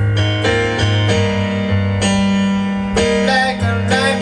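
Electric piano chords played on a Roland Juno-DS keyboard over a steady low bass note, a fresh chord struck every second or so.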